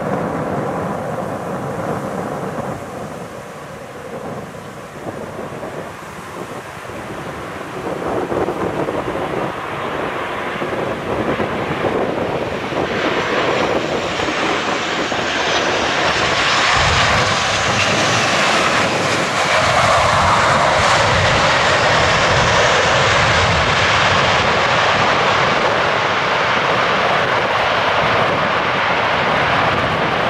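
Southwest Airlines Boeing 737 landing, the whine and rush of its twin CFM56 turbofan engines growing as it comes in. A falling whine marks its pass, and the sound is loudest from touchdown, about halfway in, as the jet rolls out down the runway.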